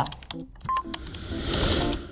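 A short electronic beep, then a whoosh sound effect that swells and fades over about a second, marking a slide transition.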